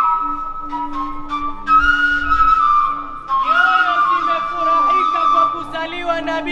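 A long end-blown flute plays held notes in maqam rast, stepping between pitches, over a steady low drone. A wavering voice joins the flute about halfway through.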